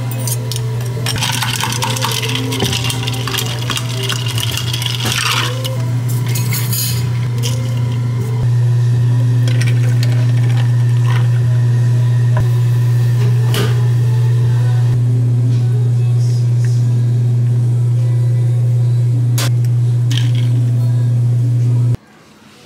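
Coffee poured from a metal pitcher into a glass of ice, a rushing pour in the first few seconds, followed by clinks of glassware and metal utensils on the counter. A steady, loud low hum runs underneath.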